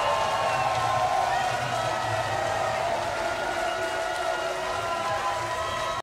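A large outdoor crowd cheering and shouting at the end of a set, many voices overlapping in a steady wash that eases off slightly toward the end.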